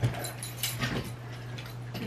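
Clothes and wire hangers rustling and clinking as an armful of garments is gathered up, with a brief dog whimper.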